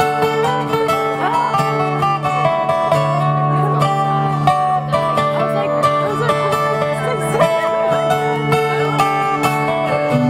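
Two acoustic guitars playing an instrumental passage of a song: steady strummed chords with a melody line over them.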